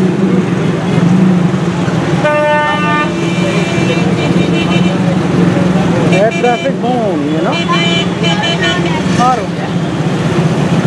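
Busy street traffic: a steady engine hum under vehicle horns honking, one long toot about two seconds in and shorter toots later on.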